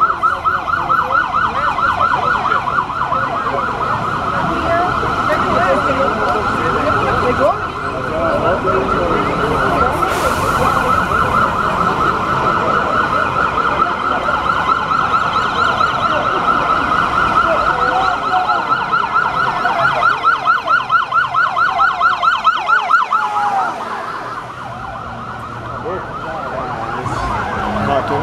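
Police vehicle siren sounding a loud, rapid warble that holds steady, then drops away about four seconds before the end.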